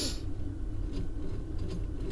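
Plastic wheels of a die-cast toy car rolling back and forth on a tabletop, a faint, even low rumble.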